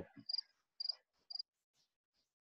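A cricket chirping faintly in the background, short high chirps about twice a second.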